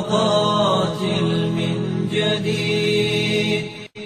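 Arabic Islamic nasheed sung in long, drawn-out held notes. The singing breaks off briefly near the end before the next line begins.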